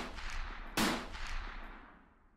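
Deep booming impact sound effects with long echoing tails, marking the title letters as they appear. One hit is dying away at the start and another strikes just under a second in, then fades out.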